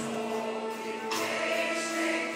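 Mixed choir singing Turkish art music (Türk sanat müziği) with instrumental accompaniment, the sound filling out about a second in.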